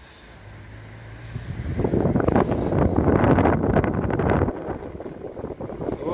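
Wind buffeting the camera microphone: a gust of rumbling noise comes in about two seconds in, lasts a couple of seconds and cuts off suddenly. A faint low hum sits beneath it at the start.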